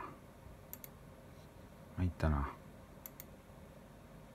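Computer mouse clicks: two quick double-clicks, one under a second in and another about three seconds in. A short spoken word falls between them.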